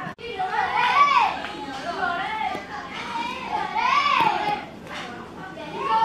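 Children's high-pitched voices calling and shouting, loud and animated, in several drawn-out phrases.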